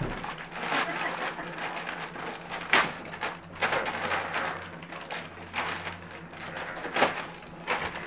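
Gift wrapping paper crinkling and tearing in irregular bursts as a dog tugs at a wrapped present, with two sharper rips near the middle and near the end.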